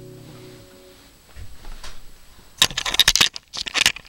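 Acoustic guitar's final chord ringing out and fading away over the first second. Then, about two and a half seconds in, a burst of rustling and knocking handling noise on the camera's microphone, with another short burst near the end.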